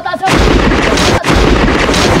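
Thunder sound effect: a loud crackling rumble with a deep low end breaks in a moment after the start, dips briefly about a second in, then carries on.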